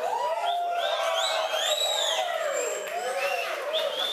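Studio audience whistling and cheering: many voices and whistles overlap in rising-and-falling whoops.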